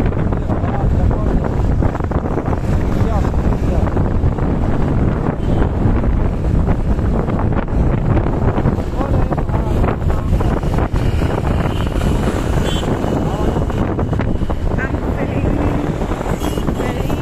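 Wind buffeting the microphone on a moving motorbike or scooter, a steady loud rush with the road and engine noise of the ride underneath.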